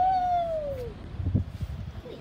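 A cat meowing once: a single long meow that falls in pitch and fades out after about a second, followed by a few dull knocks.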